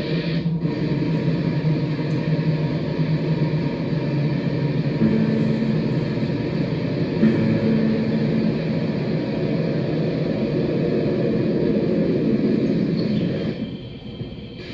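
Live electronic drone-noise music: a dense, steady rumble with several held low tones over a noisy wash. It thins out abruptly near the end.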